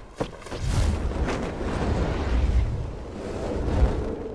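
A few footsteps on a wooden launch ramp near the start, then a steady low rush of wind as a hang glider takes off.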